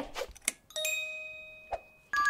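A single bell-like chime struck about a second in, ringing with several clear overtones and fading away over about a second, with a couple of short clicks around it.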